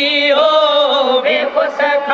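Men singing a Sindhi molood, a devotional chant, unaccompanied and through a microphone, in long held notes with wavering pitch and brief breaks between phrases.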